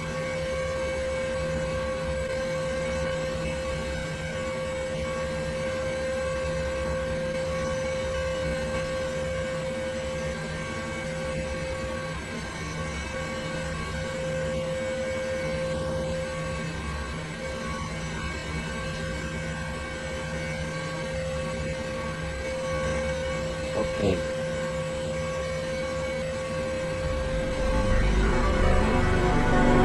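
A long, steady drone of several held tones over a hiss, with a brief gliding tone near the end: a Windows system sound heavily slowed and pitched down.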